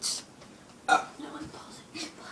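A person burping once, briefly, about a second in.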